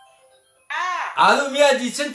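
A faint run of short notes stepping downward in pitch, then a voice breaks in loudly about two-thirds of a second in, singing a held, wavering note.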